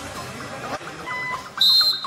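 Electronic backing music in a sparse break without bass, with a repeating short high-pitched figure coming in about halfway through and a brief, loud high whistle tone near the end.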